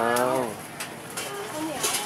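A man's voice finishing one drawn-out spoken word with a falling pitch, then faint market background.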